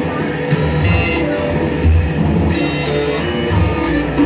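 A live band playing loud rock music with electric guitar and bass, running steadily without a break.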